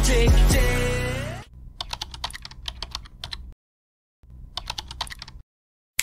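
Music ends on a sliding note, then computer keyboard typing follows in two quick bursts of key clicks with a short silent pause between them.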